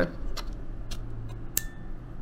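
A few small plastic clicks from a travel charger with a swappable plug head as the UK three-pin head is worked onto the charger body and the red release button is pressed. The loudest, sharpest snap comes about one and a half seconds in.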